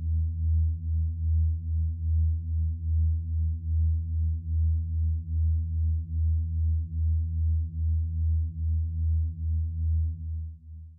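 Electronic music: a low synthesized drone with a few faint overtones, pulsing evenly about twice a second.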